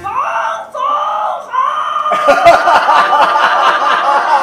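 Film soundtrack played over a hall's loudspeakers: a high voice calling out, sliding upward in pitch and then holding one long high note, with a run of sharp knocks or clatters starting about two seconds in.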